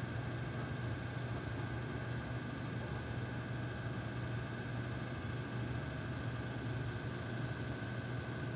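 Room tone: a steady low hum with an even hiss.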